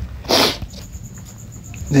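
A single short, hissy burst of breath, such as a sniff or quick exhale through the nose, about half a second in, then low room hum.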